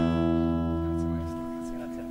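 A guitar chord struck once and left ringing. Its lowest note stops about a second and a half in, and the rest fades away.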